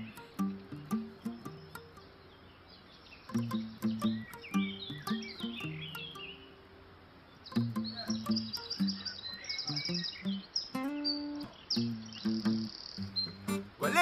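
Instrumental intro of a song: short repeated low notes stepping between pitches, with quick high chirping figures above them. It drops quiet twice for about a second.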